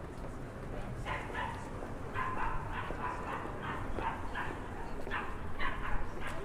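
A dog barking in a run of short, repeated yaps, about two to three a second, starting about a second in, over steady street background noise.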